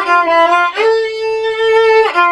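Violin played with the bow: a few short notes, then one long held note through the second half.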